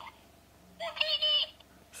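Talking Jawa plush toy's sound chip playing a short burst of high-pitched Jawa chatter from its small speaker, about a second in.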